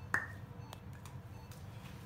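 A sharp click just after the start, with a brief ringing tail, then a fainter click about half a second later, as a marker pen is handled. Otherwise quiet room tone.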